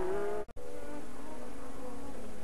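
Formula One turbo car engines running at high revs, a steady held note. It cuts out for an instant about half a second in, then carries on at a slightly different pitch.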